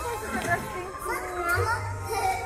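High-pitched voices, children's among them, speaking and calling out.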